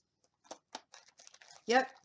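Faint rustling and crinkling of paper and plastic packaging being handled: a few separate soft crackles as a craft-supply package is opened and looked through.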